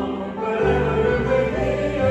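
A small congregation singing a hymn together, accompanied by piano and double bass, with sustained sung notes over a deep bass line.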